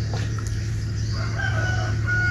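A steady low hum, with a faint drawn-out bird call in the second half.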